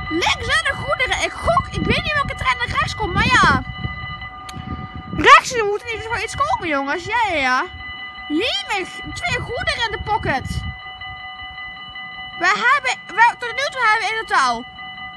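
Dutch level-crossing warning bell ringing steadily while the red lights flash. A voice rises and falls over it, and a low rumble underneath dies away about ten seconds in.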